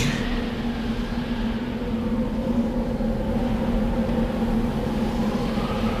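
A steady low drone with a constant hum, unchanging throughout.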